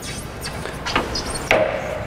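Two sharp knocks as slabs of 2 cm quartz are set against each other and against the saw table while being lined up, the second knock louder with a short ring after it.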